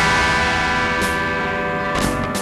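Instrumental noise rock: a loud, sustained distorted electric guitar chord holds steady, with a sharp hit about a second in.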